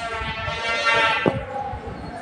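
A goat bleating: one long, buzzy call of about a second and a half.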